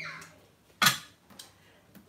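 Thermomix lid being put on the steel mixing bowl: one sharp clack a little under a second in, followed by a couple of faint clicks.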